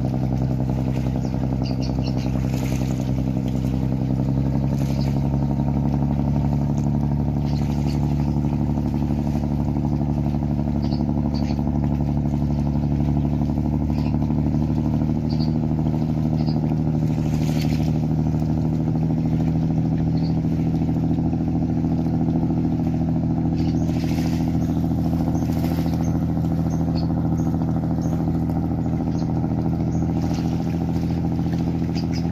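Diesel engines of a high-speed passenger riverboat running at cruising speed, a steady deep drone that rises slightly in pitch over the first half.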